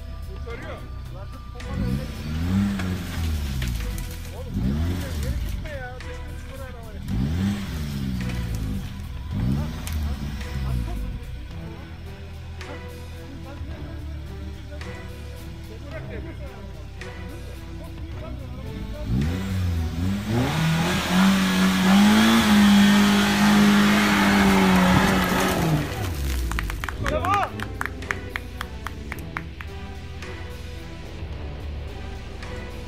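Suzuki Jimny's engine revving up and down in repeated throttle bursts as it climbs a steep, rutted dirt slope. About two-thirds of the way through it is held at high revs for around five seconds with a loud, noisy rush, the loudest stretch. Faint background music runs underneath.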